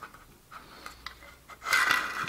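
Light handling of a thin aluminium case on a wooden table: a few faint taps, then a short scraping rub near the end as the case is lifted.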